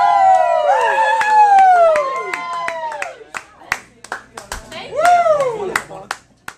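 Several voices wailing together in long, overlapping howls that hold and then slide down in pitch over a second or two, with a single falling howl about five seconds in. Sharp handclaps are scattered through.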